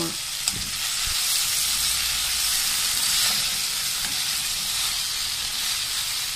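Long beans (mae karal) with onion and chilli frying in oil in a pot: a steady sizzling hiss. They are being cooked in the oil alone, with no water added.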